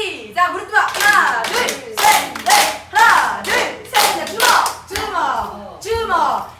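A group of women chanting a rhythm game together while clapping their hands and slapping their knees in time, roughly two claps a second.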